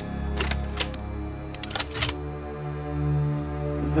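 Orchestral film score holding a low sustained chord, over which the metal parts of a futuristic rifle click and clack as it is loaded: single clicks about half a second and one second in, then a quick cluster of clicks around two seconds.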